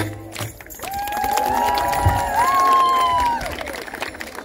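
Several high voices singing long held notes of a folk song together, the pitch stepping up about halfway and the singing ending about three and a half seconds in. A single low drum beat falls near the middle.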